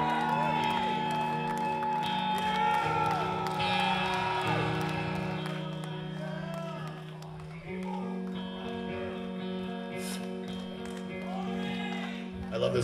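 Live electric guitar playing a slow instrumental song intro, holding sustained chords that change every couple of seconds, with audience cheers over the first few seconds.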